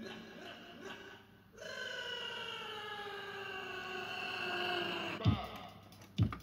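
Electrohome Apollo 862 turntable radio playing through its ball speakers: a held tone with several harmonics slides slowly down in pitch for about three and a half seconds. It is cut off by a heavy thump near the end, and a second thump follows just after.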